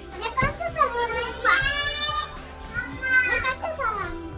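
A young child's high-pitched voice in several drawn-out, sing-song calls without clear words.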